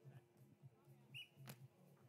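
Near silence: a faint low hum, with a brief faint high chirp and a single faint click a little past halfway.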